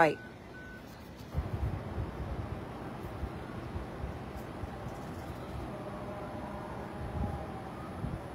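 Low vehicle engine rumble starting about a second in, after a few short, evenly spaced high beeps like a reversing alarm; a faint falling tone comes in near the end.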